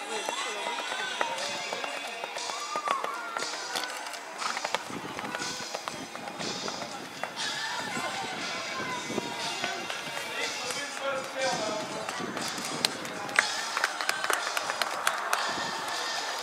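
Indistinct voices and background music, with the repeated thuds of a horse's hooves cantering and trotting on sand.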